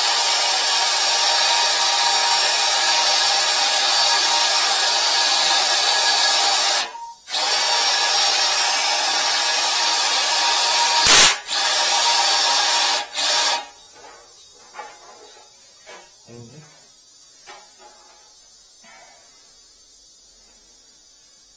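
Cordless drill spinning a drum-type drain snake, turning its cable inside a floor drain with a steady motor whine. It stops briefly about seven seconds in, runs again with a loud knock near eleven seconds, gives a last short burst around thirteen seconds and cuts out, leaving only faint clicks and handling sounds.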